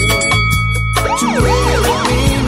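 Siren sound effect dropped into a reggae mix over the bass line: a held steady tone, then from about a second in a quick wail that swoops up and down several times.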